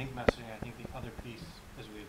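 Faint, indistinct voices in the room, with one sharp click about a quarter of a second in, the loudest sound.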